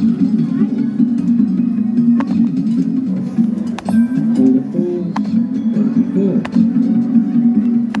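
Amusement arcade din: machine music and jingles over a background of voices, with several sharp clicks, likely the bingo machine's push-buttons being pressed.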